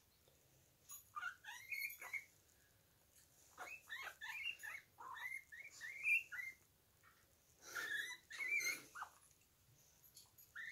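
Guinea pig squeaking, short rising high-pitched squeaks in three runs: about a second in, from about three and a half to six and a half seconds, and near eight seconds.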